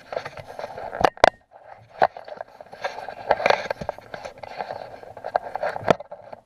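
Handling noise from a camera being moved and repositioned by hand: rubbing and scraping against the microphone, with a pair of sharp knocks about a second in, another at two seconds, and one more near the end.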